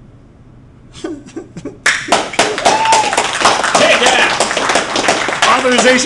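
Audience applause: a few scattered claps about a second in, then a burst of dense clapping from about two seconds, with a cheer rising over it.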